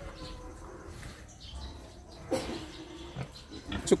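Young Duroc boar grunting in its pen, most clearly a little past halfway through.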